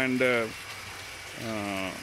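Pumped flood water pouring from a PVC pipe outlet, after a home-made drum filter, into an underground tank. It makes a steady splashing stream under a man's speaking voice, heard most plainly in the pause in his speech about half a second in.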